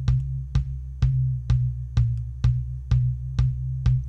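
Soloed kick drum loop playing a steady beat of about two hits a second, pitch-corrected to C and run through an EQ with a large, narrow boost at 128 Hz, an octave above the fundamental. That overtone rings as a steady low tone beneath the hits.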